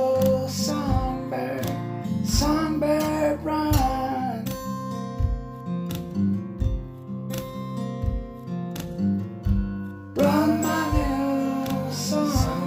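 Song on acoustic guitar between sung verses: sustained guitar chords over a steady low beat. A wordless vocal melody sounds over it for the first few seconds and comes back near the end.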